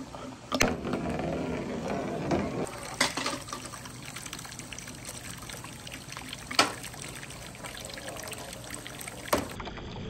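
Water running and splashing off the end of a marble-run slide onto wet pavement, a steady trickling wash. Four sharp clicks come through it: one just after the start, then about 3, 6.5 and 9.5 seconds in.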